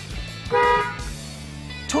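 A car horn toots once, briefly, about half a second in. After it, low steady music continues.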